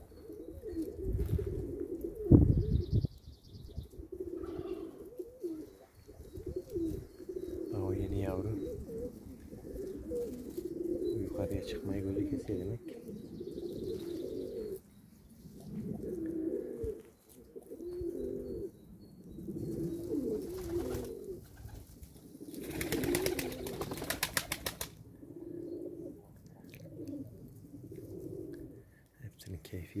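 Domestic pigeons cooing, many calls overlapping throughout. A loud low thump comes about two seconds in, and a burst of wing flapping lasting about two seconds comes near 23 seconds in.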